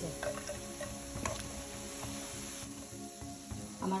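Semolina pitha balls deep-frying in hot oil, sizzling steadily, while a slotted spoon stirs them and clicks against the pan a couple of times in the first second or so.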